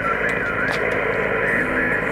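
Amateur HF transceiver's loudspeaker hissing with receiver static in a narrow single-sideband passband, faint garbled voices of distant stations under the noise, as the operator listens for replies to his CQ call.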